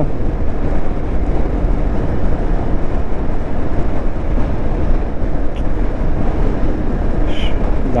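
Motorcycle riding at road speed: a steady, loud rush of wind and road noise with the engine running beneath it.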